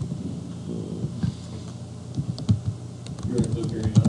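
Typing on a computer keyboard: a quick run of keystrokes, mostly in the second half.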